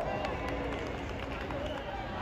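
Distant voices of players calling out across an open sports field, over a steady low background noise.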